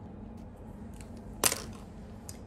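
A single sharp click about one and a half seconds in, from handling hair ties and scrunchies, over a low steady room hum.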